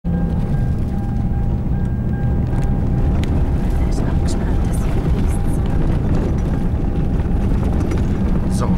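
Cabin noise inside a Toyota four-wheel drive driving over a sandy desert track: a steady, loud low rumble of engine and tyres, with occasional faint rattles.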